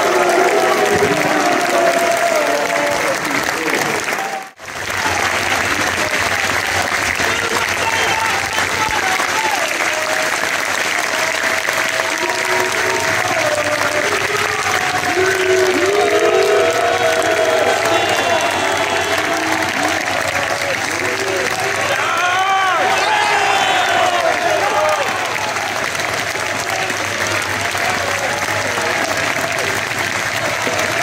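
A football crowd clapping at full time, with many voices shouting over the applause. The sound drops out briefly about four and a half seconds in.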